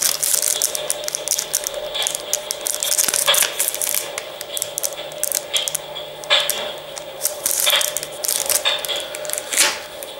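Clear plastic packaging crinkling and crackling as hands handle a coin in its plastic sleeve, in irregular bursts.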